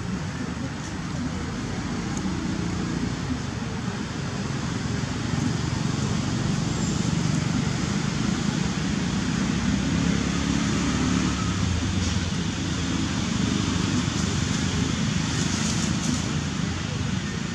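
Steady low rumbling outdoor background noise with no distinct events, like distant traffic.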